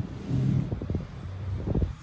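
Low rumble of wind and handling noise on a phone's microphone as the phone is carried and swung, with a few dull thumps, over a steady low hum of street traffic.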